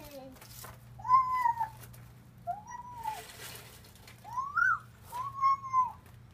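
A toddler's voice: four short, high-pitched calls that rise and fall, about a second, two and a half, four and a half and five seconds in. A brief hiss sounds about three seconds in.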